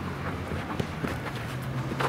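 Footsteps and light ball touches of players on artificial turf: a few soft scattered taps over a steady low background hum.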